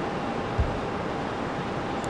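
Steady city street background noise, the rumble of traffic, with a faint steady hum and one brief low thump just over half a second in.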